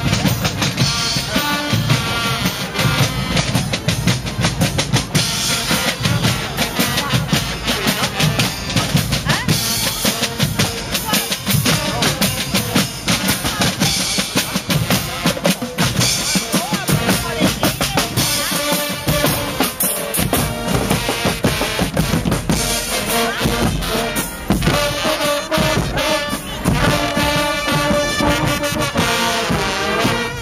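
Guggenmusik carnival band playing on the march: bass drums and snare drums keep a loud, steady beat under trombones and other brass. The brass melody stands out more clearly near the end.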